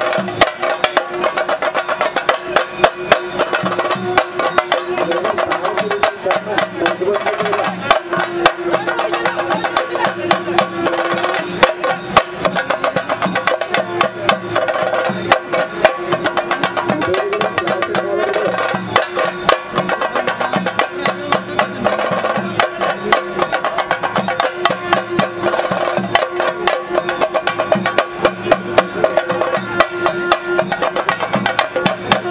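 Fast, dense ensemble drumming with sharp strokes, typical of chenda drums accompanying Theyyam, with a held pitched tone over it that bends upward briefly twice.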